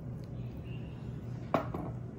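One sharp knock of glassware set down on a stone counter about a second and a half in, with a short ring after it, over a low steady hum of kitchen room tone.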